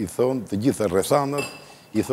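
A short ringing clink of glass about one and a half seconds in, lasting about half a second, over a man's ongoing speech.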